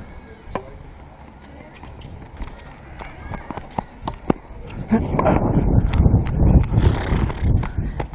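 Tennis rally on a hard court: sharp, scattered pops of rackets striking the ball and the ball bouncing. From about five seconds in, louder quick footsteps running across the court and rustling close to the body-worn microphone.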